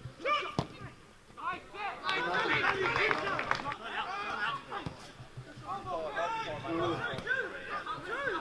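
Footballers shouting and calling to each other on the pitch, several voices overlapping, loudest from about two seconds in. A single sharp knock of the ball being kicked comes about half a second in.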